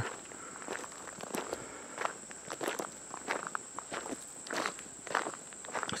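Footsteps on a gravel driveway at an even walking pace, about three steps every two seconds.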